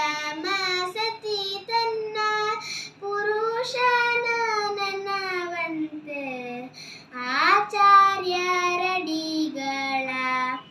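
A young girl singing a Kannada Jain devotional song (bhajan) solo, holding long notes and gliding between pitches.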